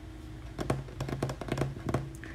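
Hands handling unboxed album contents: a rapid, irregular run of sharp clicks and taps, beginning about half a second in and lasting about a second and a half.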